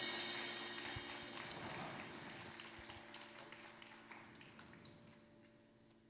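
The band's final chord dying away in the hall, with a steady held tone fading out, while a few faint, scattered hand claps sound in the first three seconds; then near silence.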